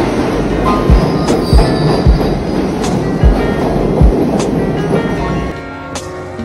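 New York City subway train running past a station platform, a loud steady rush of rail noise, under background music with a steady beat. The train noise drops away about five and a half seconds in, leaving the music.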